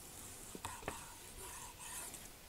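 Knife sawing through a grilled steak on a wooden cutting board: faint, repeated rasping strokes, with a few light clicks between about half a second and a second in.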